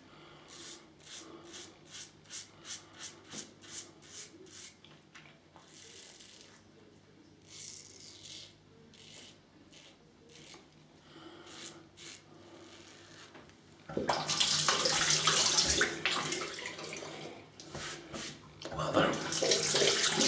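Edwin Jagger 3ONE6L stainless steel double-edge safety razor scraping through stubble on the neck in short, quick strokes, about two a second for the first few seconds, then a few scattered strokes. About 14 s in, a tap starts running loudly for rinsing, stops briefly and runs again near the end.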